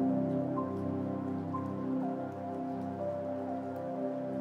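Soft background music: held, sustained chords with a light high note that recurs about once a second.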